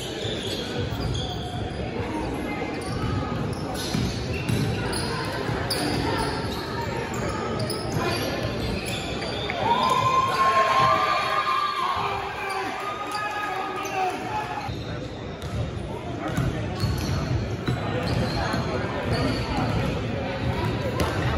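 Basketball bouncing on a hardwood gym floor during play, with players' voices echoing in the large hall. The voices are loudest about halfway through.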